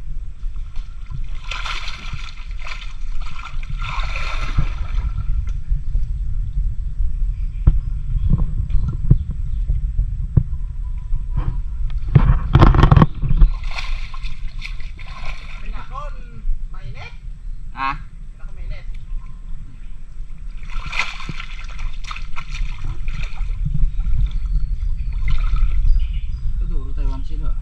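Water sloshing and splashing as a person wades in a muddy creek and digs with his hands at the mud and roots of the bank. The splashes come in several spells, the loudest about twelve seconds in, over a steady low rumble.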